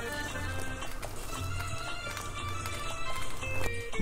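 Background music: a melody of short notes over a steady low beat.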